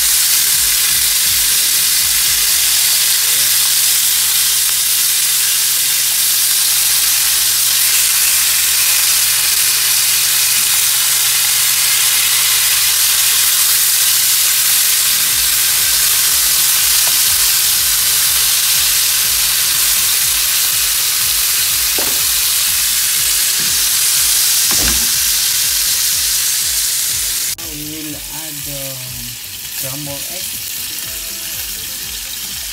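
Maya-maya (red snapper) steaks frying in hot cooking oil in a pan: a loud, steady sizzle, with a couple of short knocks from the spatula turning the fish late on. Near the end the sizzle cuts off suddenly to a quieter sound.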